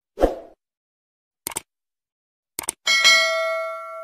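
Subscribe-button animation sound effects: a short pop, two quick clicks about a second apart, then a bell ding of several pitches that rings on and fades over about a second and a half.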